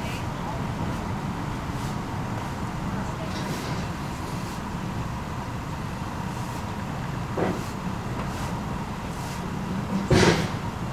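Steady low rumble of car engines and road traffic, with faint indistinct voices. A brief louder sound rises out of it about seven and a half seconds in.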